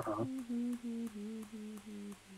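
A person humming a short tune: a run of about six held notes, each a little lower than the last.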